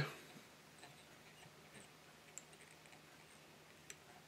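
Near silence with a few faint, scattered ticks from wrapping black tying thread with a bobbin around the hook shank back toward the bend, the slightly stronger one near the end.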